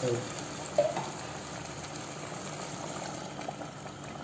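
Chicken, olives and tomato sauce sizzling steadily in a pan on the stove, with one light knock about a second in.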